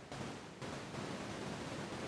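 A steady, even rushing hiss with no distinct events, like microphone hiss or wind noise.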